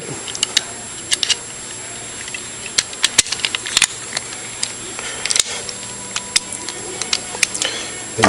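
Small metal parts clicking and tapping at irregular moments as a trigger-guard lock attachment is handled and fitted onto the other side of a pistol's trigger guard.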